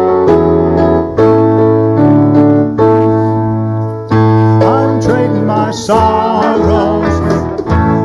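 Live worship band music. Steady keyboard chords with a bass line play for the first half, and singers come in partway through.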